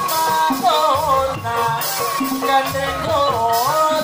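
Live Banyumasan gamelan music accompanying an ebeg dance: kendang barrel drum and metal percussion under a sliding, ornamented melody line, played loud through a sound system.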